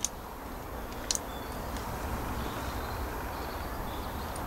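Steady low background rumble with two faint short clicks, one right at the start and another about a second in.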